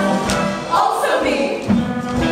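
Brass-led show band playing music for a musical-theatre dance number, with a steady beat. Through the middle a single high wavering note bends up and down over the band.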